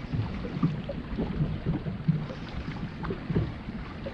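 Wind buffeting the microphone, with small waves lapping and slapping irregularly against a bass boat's hull.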